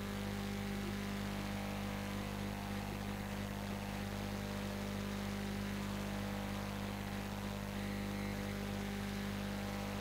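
Steady electrical mains hum with an even hiss from the sound system, with no other sound standing out.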